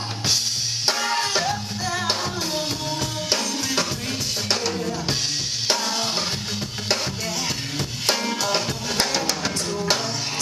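A live band playing, led by a drum kit, with electric guitar, organ and a woman singing into a microphone.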